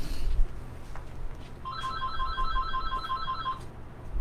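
Telephone ringing with an electronic ring of rapid short beeps, about four a second, lasting about two seconds near the middle. Low bumps at the start.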